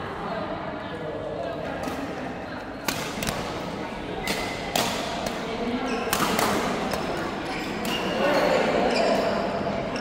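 Badminton rally: rackets striking the shuttlecock in several sharp cracks spaced about a second apart, with voices in the background.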